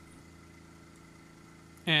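Faint, steady machine hum with a few even tones running under it; a man starts talking near the end.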